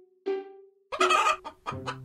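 A hen clucking, a cartoon sound effect, starting about a second in, over background music of short repeated notes.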